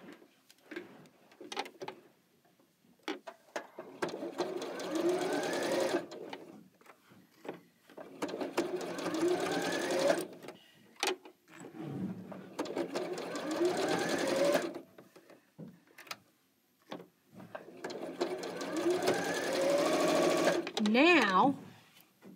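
Janome computerized sewing machine stitching in four short runs of two to three seconds each, the motor's whine rising in pitch as each run speeds up. A few clicks fall in the pauses between runs.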